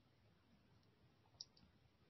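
Near silence: room tone, with a small sharp click about one and a half seconds in and a fainter one just after.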